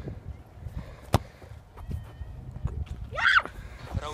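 A football struck hard once with the foot about a second in, a single sharp thump. Near the end comes a short, high-pitched celebratory yell that rises and falls.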